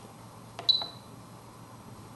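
Light clicks from the adjust rocker of a Spektrum DX7se radio transmitter being pressed, with a short high beep from the radio about two-thirds of a second in as the swash type setting steps from one servo to two servos.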